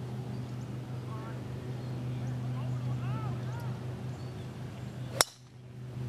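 A golf driver striking a teed ball: one sharp crack about five seconds in.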